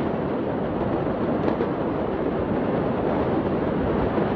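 Steady rushing noise of wind on a phone microphone, with no distinct bangs or blasts.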